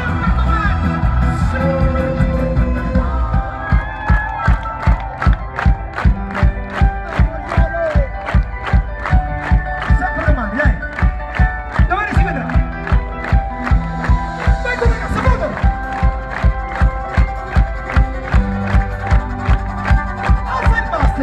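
Live band playing a rock song with electric guitar, keyboards, violin and drums, heard from amid a cheering crowd. A steady beat of about two strokes a second comes in a few seconds in and carries on.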